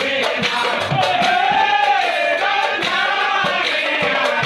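Nagara naam devotional singing: a voice holds long, arching sung phrases over a steady run of metallic cymbal clashes and a few low nagara drum beats.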